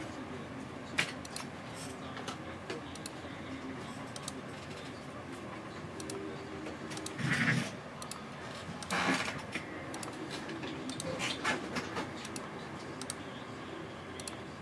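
Scattered light clicks of a computer mouse and keyboard at a desk, with a couple of louder short rustling noises about seven and nine seconds in.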